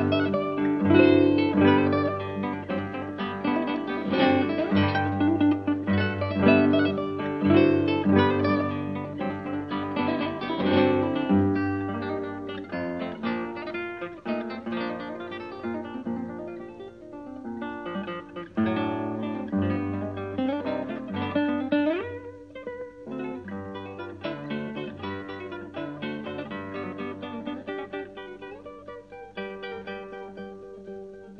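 Background music on plucked acoustic guitar, a quick run of notes that grows quieter through the second half.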